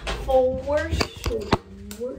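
A woman's voice sounds briefly without clear words. About a second in come three sharp knocks, spaced about a quarter second apart, from the handheld camera being handled and moved.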